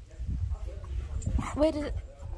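A West Highland white terrier vocalizing briefly with a few short, faint sounds, over a low rumble.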